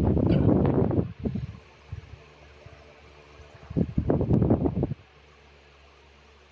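Two loud bursts of rumbling, rustling noise on the microphone, one in the first second and a longer one from nearly four seconds in to about five, typical of handling or rubbing against the recording device's microphone; faint steady hum between them.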